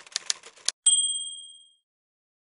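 Typewriter sound effect: a quick run of sharp key strikes, then a single bright bell ding about a second in that rings out and fades.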